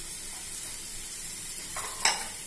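Chickpeas sizzling in a hot kadhai, a steady hiss of frying, with a brief knock or clatter in the pan near the end.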